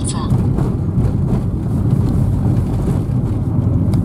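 Steady low rumble of a car's engine and tyres heard from inside the cabin while driving through city traffic.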